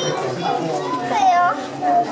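People chattering with children's voices among them; a child calls out in a high voice about a second in.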